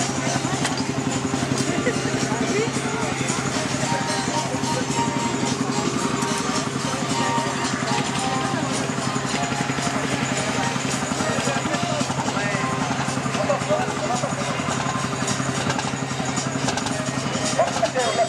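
An old stationary engine running steadily, driving a belt-driven farm machine for straw. Voices and music sound over it.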